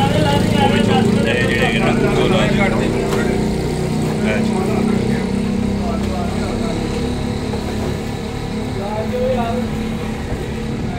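A steady motor drone, like an engine running, with people talking in the background over the first few seconds and again briefly near the end.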